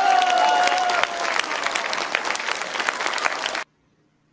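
Audience applauding, dense clapping throughout that cuts off suddenly near the end. A steady held tone sounds over the clapping for the first second.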